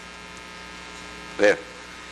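Steady electrical mains hum with many evenly spaced overtones, running under the recording, with one short spoken word about one and a half seconds in.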